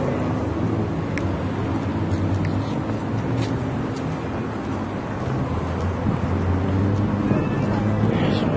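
Busy street sound: traffic running steadily at an intersection, with a low engine hum, and indistinct voices of people walking past.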